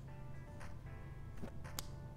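Quiet background music, a little too chill and happy, with sustained notes. Three sharp clicks of LEGO pieces being handled cut through it, the loudest near the end.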